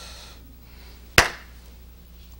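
One sharp hand clap a little past a second in, with a brief ring-out, over a low steady hum.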